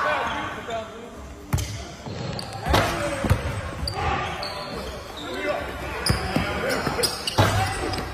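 Basketball bouncing on a hardwood gym floor during play, a handful of irregular thuds, among players' voices echoing in a large gym.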